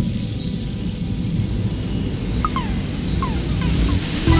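Opening of an R&B track: a steady low rumbling ambience with a few short, falling chirps about two and a half and three seconds in, before the instruments come in.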